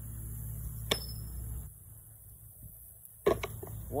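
Thrown metal washers striking a wooden washer-toss board: a sharp clack about a second in, then a louder clack with a few smaller rattling clicks near the end as a washer drops into the centre box.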